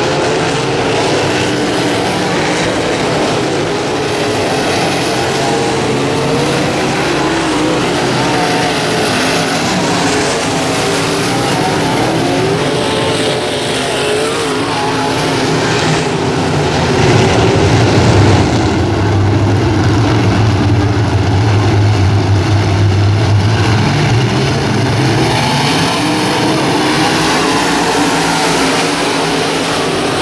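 Dirt-track modified race cars' V8 engines running at racing speed, the engine notes rising and falling as cars pass. A deeper, louder engine note stands out from about halfway through for several seconds.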